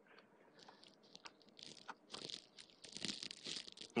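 Faint computer keyboard clatter: a few scattered key clicks at first, then denser and louder over the last two seconds.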